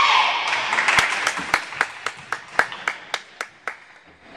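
Hands clapping in a steady rhythm, about four claps a second, fading out near the end. It follows the tail of a loud group cheer in the first second.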